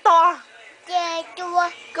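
A toddler's voice singing wordless sing-song notes: a falling slide at the start, then a few short held notes.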